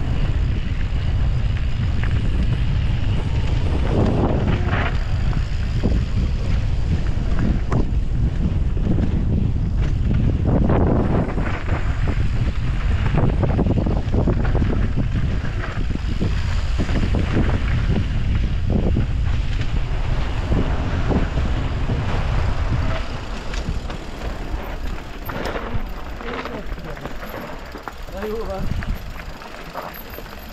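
Wind buffeting a handlebar-mounted action camera's microphone as a mountain bike descends a gravel trail at speed, with tyre crunch and frequent knocks and rattles from the bike over bumps. The wind noise drops some five seconds before the end as the bike slows among the trees.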